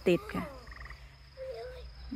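A frog gives a short pulsed trill a little under a second in, over the steady high chirring of insects.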